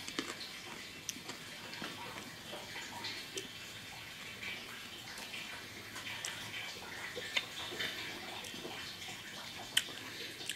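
Someone chewing a bite of raw Black Hungarian chili pepper with the mouth closed: faint, scattered wet crunches and clicks, with a couple of sharper clicks late on.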